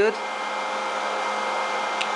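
A cooling fan running steadily, a constant whir with a steady hum under it.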